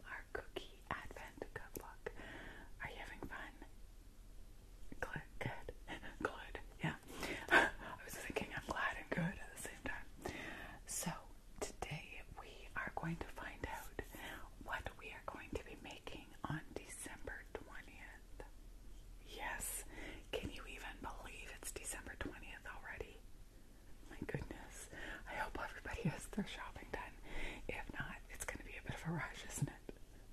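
A woman whispering in phrases, with a few short pauses.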